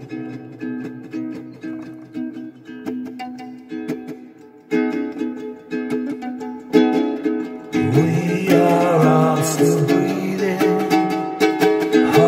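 Ukulele strummed in a steady chord rhythm, dipping quieter about four seconds in. About eight seconds in a man's singing voice comes in over the strumming and becomes the loudest sound.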